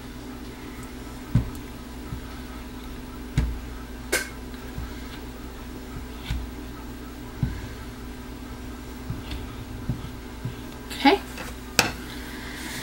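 Plastic spatula stirring liquid in a plastic measuring jug, with a few soft knocks as it taps the jug's sides, over a steady low hum.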